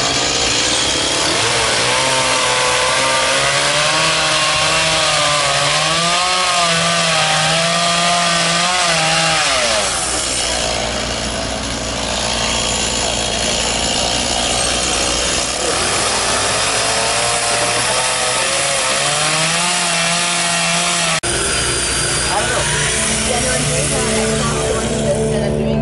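Chainsaw running while carving wood, its engine pitch wavering up and down as it bites into the cut and frees up. The sound changes abruptly near the end.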